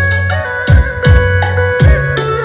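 Electronic backing music played loudly through an LS Acoustic trolley karaoke speaker with a 40 cm bass driver. Two deep kick-drum thumps drop in pitch, with held bass notes and steady keyboard tones between them.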